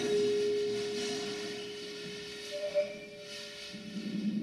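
A single long, steady instrumental note from an improvising ensemble, held and slowly fading over about four seconds, with a brief higher note near the end.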